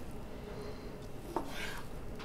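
A butcher knife trimming the outer layer off a slice of elk heart on a wooden cutting board. The blade knocks sharply on the board a little past halfway, then makes one short scraping cut through the meat.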